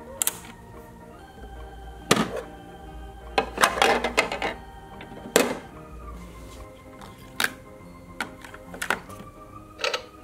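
A simple electronic tune plays steadily while plastic toy ice cream pieces are handled on a LeapFrog Scoop & Learn Ice Cream Cart, giving sharp clicks and knocks every second or two, with a quick cluster of them about four seconds in.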